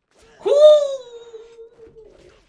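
A man's excited "woo!" cry that jumps up in pitch as it starts, then trails off as a long held "ooo" for about a second and a half.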